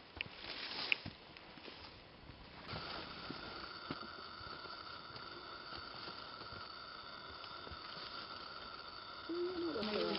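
Soft footsteps and brushing of a hiker walking a narrow dirt trail through dense bamboo grass, with scattered light clicks. From about three seconds in, a steady high-pitched whine runs alongside.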